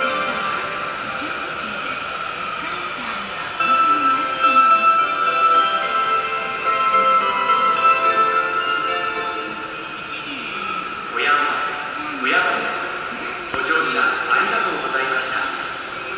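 Station platform PA playing a melody of held chime-like tones, followed from about eleven seconds in by a spoken announcement over the loudspeakers.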